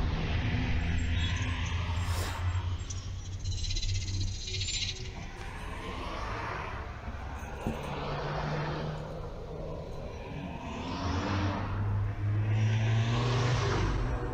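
Dashcam audio of a car standing still: a steady low engine hum, with traffic noise rising and falling several times.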